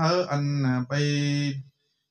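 A man's voice chanting a Buddhist blessing in a melodic recitation, holding long steady notes. The voice stops shortly before the end.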